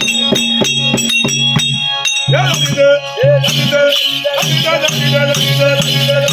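Tamil therukoothu ensemble music: rapid drum strokes and metallic jingling over a steady harmonium drone. A wavering melody line enters about two seconds in.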